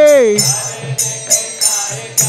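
Devotional kirtan music. A held sung note slides down and ends in the first half-second, then hand cymbals keep a steady beat, about three strikes a second, over a drum.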